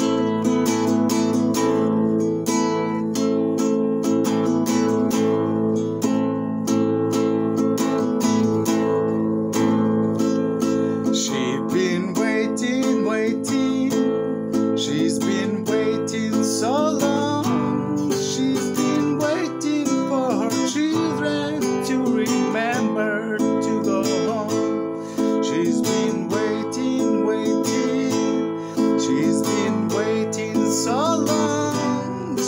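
Acoustic guitar strummed steadily through a chord progression. A man's singing voice joins over it about eleven seconds in.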